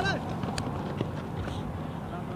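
Two short sharp knocks about half a second apart over steady outdoor background noise, with a voice trailing off at the very start.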